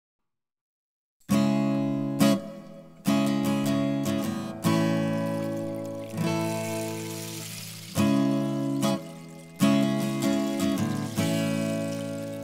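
Acoustic guitar opening a song: chords strummed one at a time, each left to ring out and fade before the next, starting after about a second of silence.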